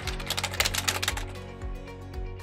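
Rapid typing clicks, a typing sound effect for on-screen text, stopping a little over a second in, over background music with a steady beat.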